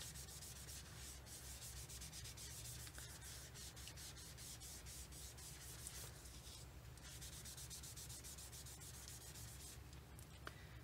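Foam stamping sponge dabbing and rubbing ink onto cardstock and scrap paper: a faint, fast run of soft scratchy strokes, blending the ink into a smooth sponged background.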